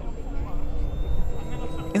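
Wind rumbling on the microphone, with a faint steady high whine behind it.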